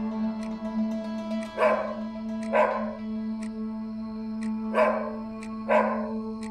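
A dog barking four times, in two pairs: two barks about a second apart, then two more near the end. The barks sit over background music with a sustained drone.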